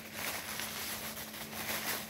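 Plastic packaging wrap rustling and crinkling as hands unwrap it, over a faint steady hum.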